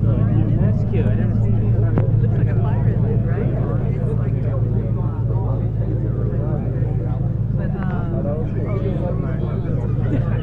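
Japanese mini fire truck's small engine idling with a steady low hum, under indistinct chatter of people nearby.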